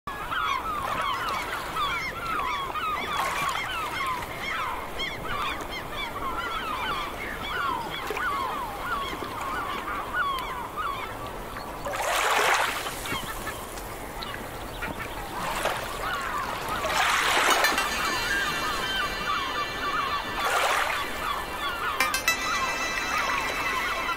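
A flock of birds calling, many short overlapping calls at once, with noise swells about twelve, fifteen, seventeen and twenty seconds in. Steady musical tones enter near the end.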